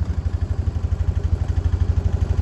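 A side-by-side utility vehicle's engine idling steadily, with an even, rapid low pulse.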